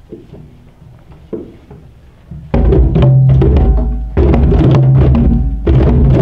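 A class of children playing djembe-style hand drums together in rhythm, the drumming starting about two and a half seconds in after a quiet stretch and going on loudly with short breaks between phrases.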